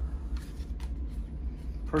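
Soft handling noise of packaging: a few light taps and rustles as an arrow rest is lifted out of its cutout foam insert, over a low steady hum.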